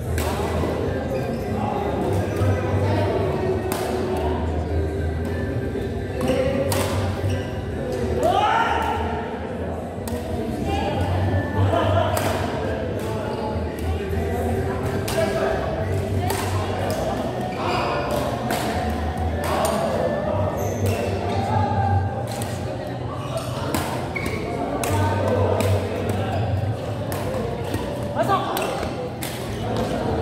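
Badminton play in an echoing hall: sharp racket hits on the shuttlecock and thuds of footfalls on the court, scattered all through, over indistinct voices.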